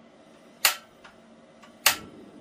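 Two sharp snaps of a Gas One dual-fuel camp stove's piezo igniter as the control knob is turned to high, about a second apart. The first fails to light because not enough propane has reached the line yet; the second lights the burner.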